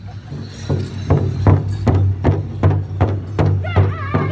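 Powwow drum group striking a large shared hide drum with padded beaters in unison: a steady beat of about two and a half strokes a second that grows louder over the first second or so. A high lead singing voice comes in near the end.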